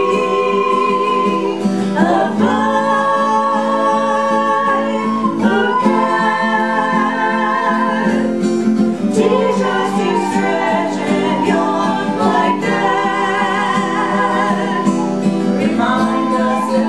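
Amateur group song: voices singing in long held notes over strummed acoustic guitars, with a child playing a recorder.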